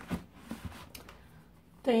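Faint scrapes and light taps of books being tilted and slid against one another as one is drawn out of a tightly packed bookshelf.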